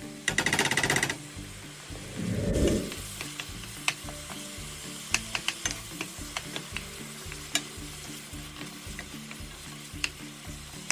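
Ground beef and diced onions sizzling in a stainless steel skillet as a wooden spoon stirs them, with sharp clicks of the spoon against the pan. Near the start comes a loud, rapidly rattling burst lasting about a second, and a low rumble follows a little later.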